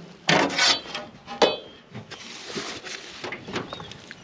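Rubbing and scraping handling noises in an aluminum boat as a small largemouth bass is lifted off the measuring board, with a loud scrape near the start, a sharp click about a second and a half in, and a longer hissy scrape after it.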